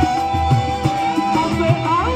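Live band music led by a side-blown bamboo flute holding one long note, then sliding up near the end, over a drum beat and bass.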